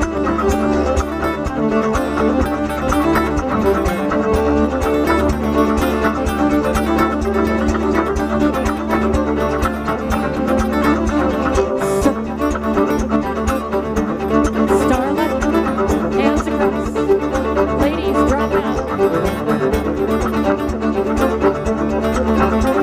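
Live contra dance music: a fiddle-led dance tune over a steady, even beat.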